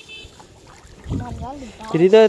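Water sloshing around someone wading in a river and lifting a monofilament gill net, with a short low rumble about a second in. A person's voice joins near the end.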